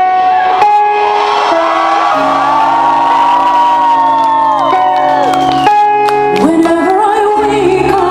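Live music: a woman's voice singing long, gliding held notes over sustained chords, with low held notes entering about two seconds in and a new sung phrase starting near the end.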